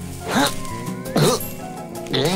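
Light background music under two short voiced grunts from a cartoon character, one about half a second in and one falling and rising again just after a second.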